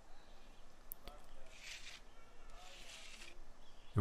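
Two soft scrapes of a steel hand edger worked over fresh, fairly dry concrete, about a second and a half in and again near three seconds, after a light click about a second in.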